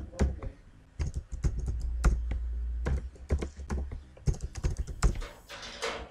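Computer keyboard typing: irregular runs of keystrokes as a new password is typed and then retyped at a terminal password prompt.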